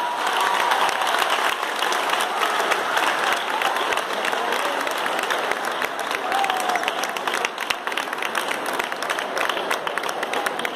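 Audience applauding steadily, with a few shouts and voices rising from the crowd.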